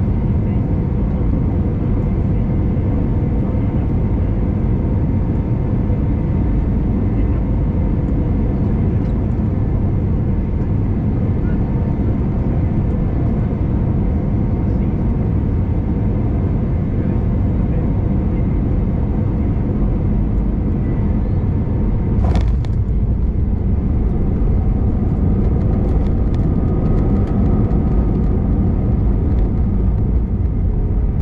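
Cabin noise of an Airbus A320-214 with CFM56 engines on final approach: a steady rumble with faint engine tones. About three-quarters of the way in comes a sharp thump as the main gear touches down, then the noise rises a little and a new engine tone comes in as the thrust reversers deploy during the rollout.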